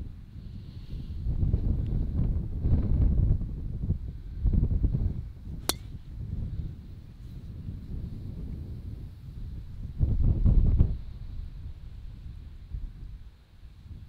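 A golf driver striking a teed ball once, about halfway through: a single sharp crack. Wind buffets the microphone in gusts, and the loudest gust comes near the end.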